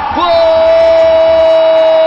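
A male football commentator's long, drawn-out goal cry ('goool'): the voice swoops up and then holds one steady, loud note.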